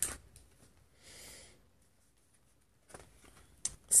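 Pages being turned on the metal rings of a ring binder: a sharp click at the start, a brief soft papery swish about a second in, then faint rustling and a tap just before the end.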